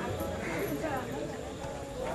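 Indistinct human voices, with no clear words.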